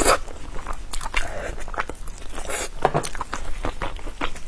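Close-miked eating of braised lamb rib meat: biting and chewing, heard as a run of irregular sharp mouth clicks and short crackles.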